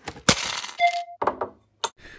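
Silver coins dropped onto a pile: a short burst of metallic clinking about a quarter second in, with a ring that hangs on briefly, then a few single clinks.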